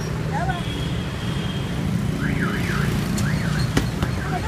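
Street traffic rumble, with an electronic vehicle alarm sweeping rapidly up and down in pitch for about a second past the middle, and a sharp click near the end.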